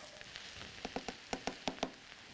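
Cabbage, carrots and onions frying in bacon oil in a stovetop pan: a faint sizzle with about ten sharp, irregular pops and clicks in the second half.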